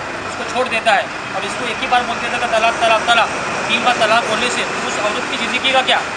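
A man talking into reporters' microphones, with a steady hum of street traffic underneath.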